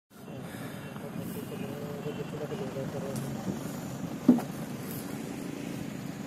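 Faint distant voices over a steady low outdoor rumble, with one short sharp sound a little after four seconds in.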